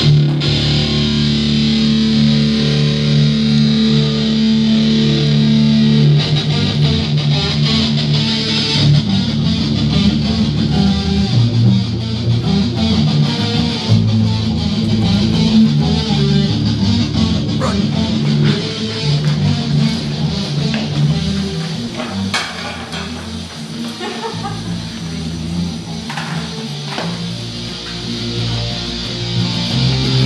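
Electric guitar and bass guitar played together through small amps in a rehearsal. Low notes are held for the first several seconds, then the playing turns into a busier riff of quickly changing notes.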